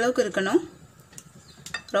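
Wire whisk stirring thick cake batter in a glass bowl: a soft scraping swish with a few light clicks of the wire against the glass.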